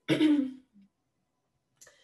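A woman clearing her throat once, a short sound of about half a second at the start, followed by silence.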